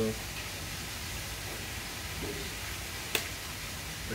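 A dropped raw egg landing at the muddy water's edge with a single short, sharp tap about three seconds in, cracking its shell on impact.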